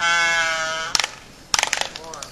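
Laysan albatross courtship display: one long sky call held for nearly a second and falling slightly in pitch, then a sharp click and a quick run of bill clacks as the pair fence bills.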